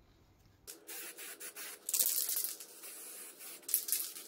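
Aerosol spray-paint can spraying in short hissing bursts, the longest about two seconds in.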